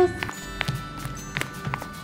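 Soft background music with about four light taps spread through it, from the toy doll being moved by hand across the set.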